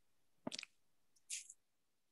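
Near silence broken by two brief faint noises: a soft knock about half a second in and a short hiss about a second later.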